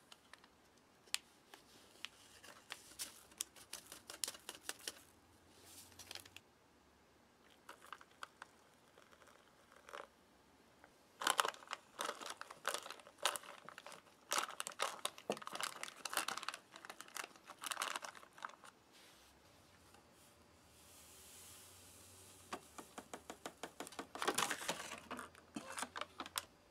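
Foil-lined ration pouch crinkling and rustling as a spoon stirs dry muesli and creamer powder inside it. The sound comes as bursts of crackly clicks and scrapes, busiest and loudest in the middle.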